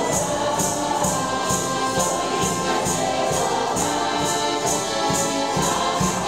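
Folk ensemble performing a song: a mixed group of voices singing together over accordion, with a jingling tambourine-like percussion beat about twice a second.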